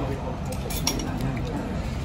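Tableware clinking: a few sharp clicks a little under a second in, one leaving a brief high ring, over the steady chatter of a busy restaurant.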